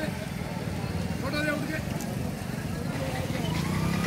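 Busy street market: a motor vehicle engine rumbling nearby under scattered background voices, with a steady low engine hum setting in near the end.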